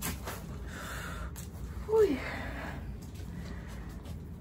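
A woman's breathy gasp, then a short falling cry about two seconds in: her reaction to hard wax being ripped off her underarm, which she calls very painful.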